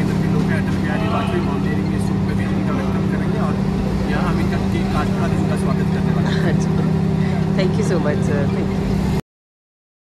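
A steady low drone fills the road tunnel under a man's talking, then the sound cuts off abruptly about nine seconds in.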